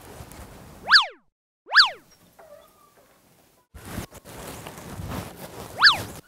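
Cartoon-style 'boing' sound effects edited into the sketch: two short, quick rising-and-falling pitch glides about a second apart, then a gap of silence, and a third just before the end as the picture cuts to the next scene.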